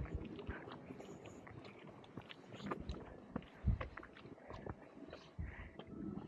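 Faint footsteps on a gritty paved driveway: irregular light scrapes and clicks with a few soft thumps.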